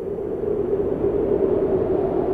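A steady rushing, rumbling noise, densest in the low-mid range, slowly swelling in loudness. It is a noise-like sound effect laid in as the intro of a pop song's recording.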